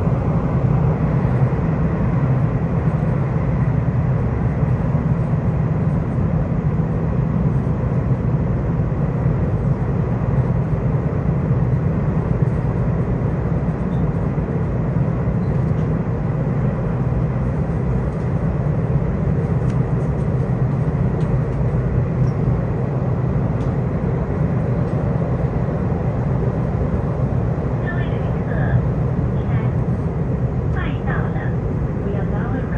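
Cabin noise of a Puyuma Express TEMU2000 tilting electric multiple unit running: a steady low rumble and rush of the train in motion, heard inside the passenger car. Near the end, the onboard arrival announcement begins over the train noise.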